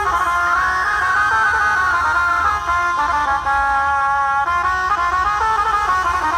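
A Dhumal band playing live: a reed or brass melody in long held notes, with a note that slides up and back down about a second in, over a steady low drum and bass beat.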